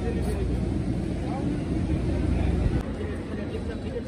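Men's voices talking indistinctly over a steady low engine rumble, which cuts off a little under three seconds in.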